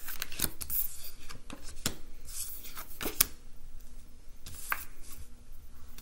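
Oracle cards being shuffled by hand, a run of crisp papery swishes and snaps with a sharp snap a little after three seconds, then cards laid down on a wooden tabletop.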